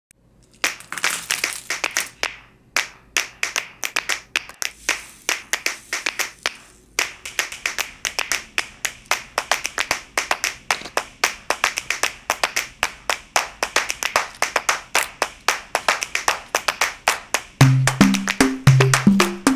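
Rapid sharp clicks and taps, several a second, with brief pauses. A low bass line enters just before the end.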